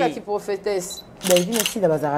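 A woman talking, with a couple of sharp hissing consonants about halfway through: only speech.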